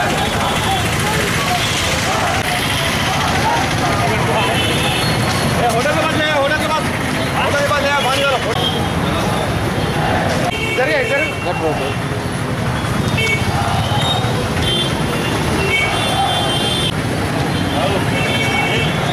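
Busy street commotion: several people's voices shouting and calling over steady road traffic noise, with short high-pitched tones coming and going.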